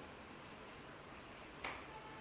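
A single sharp tap about one and a half seconds in, as a whiteboard eraser is put against the board, over faint room hiss.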